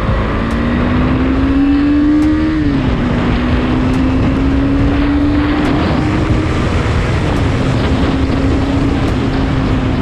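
Motorcycle engine under acceleration, its note climbing and dropping at gear changes, once near three seconds in and again a little after seven seconds in, over a low wind rumble on the microphone.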